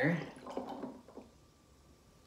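Michelada mix poured from a small measuring cup onto ice in a glass, trickling and dripping irregularly for about a second, then stopping.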